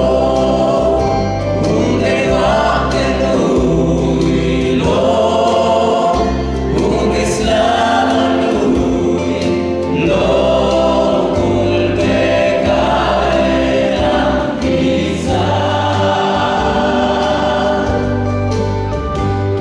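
Many voices singing a Pentecostal hymn together in a large church, led by men on microphones, over amplified accompaniment with sustained low bass notes.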